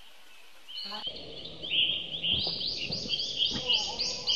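Forest ambience of high-pitched wildlife calls. A steady high drone fills the first second, then a run of repeated chirps comes at about three a second, with a few faint knocks.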